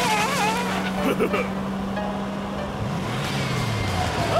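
Cartoon go-kart engine humming at a steady pitch, then dropping lower about three seconds in. Over it come brief character vocal squeaks in the first second and a half, and background music.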